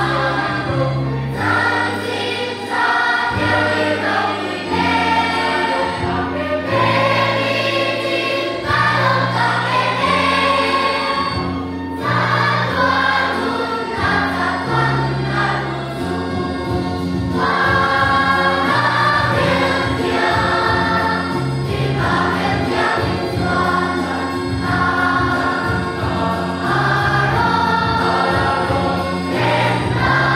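Children's Sunday school choir singing a Christmas song in unison, accompanied by an electronic keyboard whose held bass notes change every second or two beneath the voices.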